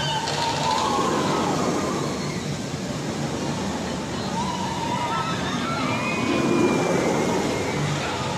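Steel floorless roller coaster train running along its track with a steady rushing rumble, and riders' screams and shouts rising and falling over it several times.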